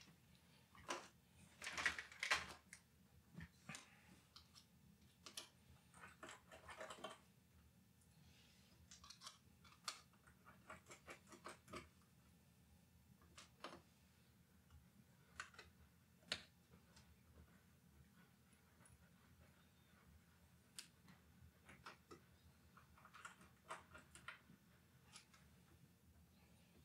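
Mostly near silence, broken by faint, scattered clicks and small taps: tiny screws and a precision screwdriver being handled and driven into an mSATA-to-IDE adapter board. A few short clusters of clicking come in the first several seconds, then single clicks now and then.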